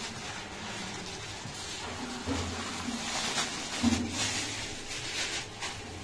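Thin plastic bag rustling and crinkling as white rice grains are poured from it onto a small brass plate and stirred in by hand. The rustling comes in uneven bursts, busiest in the middle of the stretch.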